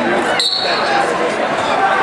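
A referee's whistle blows once, briefly, about half a second in, starting the wrestling bout. It sounds over steady crowd chatter echoing in a gymnasium.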